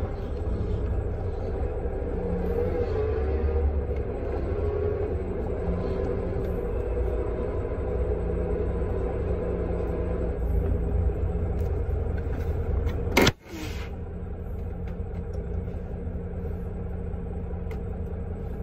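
Tractor-trailer's diesel engine running steadily, heard from inside the cab as a low rumble. About thirteen seconds in there is a single sharp click and a momentary dip in the sound.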